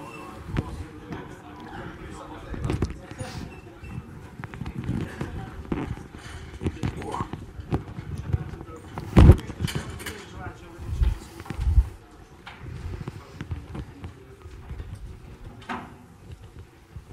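Indistinct talk in a room with irregular knocks and thumps, the loudest a sharp knock about nine seconds in.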